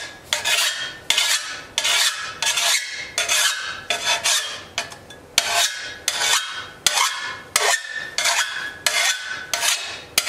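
Six-inch hand file rasping across the beveled edge of a steel shovel blade in quick, even strokes, about two a second, sharpening the edge and working out nicks.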